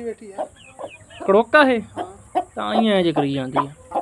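Aseel chickens calling and clucking: a run of short pitched calls, then a longer call lasting about a second near the end.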